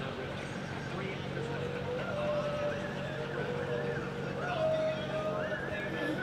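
Indoor arena ambience: a steady low hum under faint, indistinct voice sounds with drawn-out, wavering notes in the background. No words are clear.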